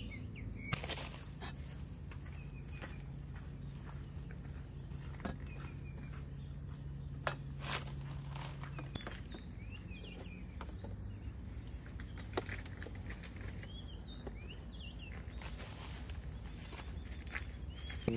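Outdoor background with short bird chirps, a few sharp clicks and knocks from cookware being handled on a table, and a low steady hum that stops about halfway through.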